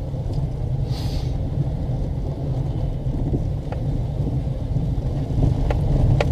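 Steady low rumble of a car driving slowly, its engine and tyres heard from inside the cabin.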